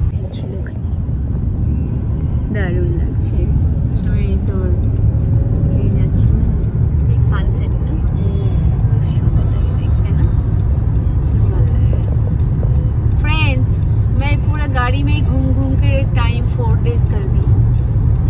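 Steady low road and engine rumble inside a car cabin at freeway speed. Voices are heard faintly over it at times, more often near the end.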